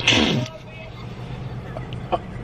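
Car engine idling with a steady low hum, heard from inside the cabin, after a brief voice in the first half-second.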